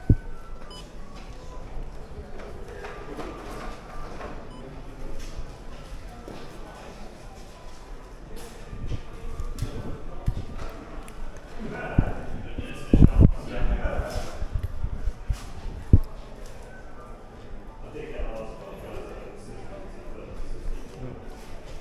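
Indistinct chatter of people talking in a large, echoing room, with a few sharp low thumps near the start and in the middle.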